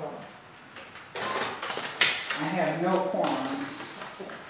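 Paper rustling on a table with a sharp tap about two seconds in, followed by a short stretch of quiet speech.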